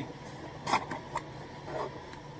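Cardboard shipping box being pulled open by hand: one short sharp rip of the flap about three quarters of a second in, then lighter cardboard rustles and scrapes.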